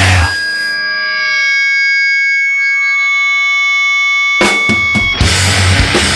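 A fast hardcore punk band stops dead, and an electric guitar rings on in a steady, high feedback tone for about four seconds. Drums crash back in and the full band resumes near the end.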